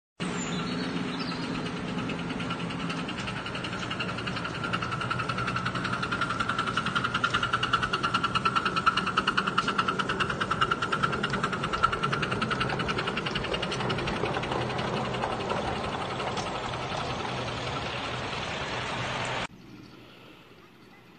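A 7¼ inch gauge live steam tank locomotive running along its track with quick, even beats, getting louder as it passes close by and fading again. It cuts off suddenly near the end.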